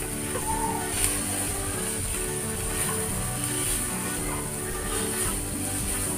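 Background music with slow, sustained notes, over a faint frying sizzle and occasional light scrapes of a silicone spatula stirring chicken mince in a pan.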